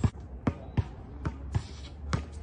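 Basketball bouncing on a hard outdoor court: about four sharp bounces in under two seconds, the first one the loudest.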